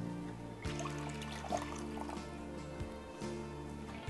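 Background music of steady held chords, changing about two-thirds of a second in, with a faint trickle of water draining off pomegranate arils underneath.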